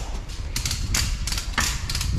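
Handling noise close to the microphone: about three sharp clicks or knocks of work gear over a low rumble.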